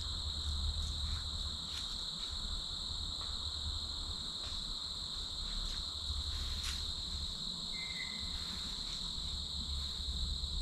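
Crickets trilling in one steady, unbroken high-pitched chorus, over a low rumble, with a few faint scattered ticks. A brief high chirp comes about eight seconds in.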